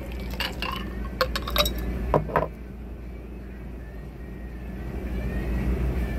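Ice clinking against a glass mason jar and drinking glass as a cocktail is poured from one into the other, a quick run of sharp clinks over the first two and a half seconds that then stops.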